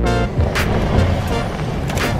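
Audi Q7 SUV driving up a dirt track: a continuous engine and tyre rumble, with music and its beat laid over it.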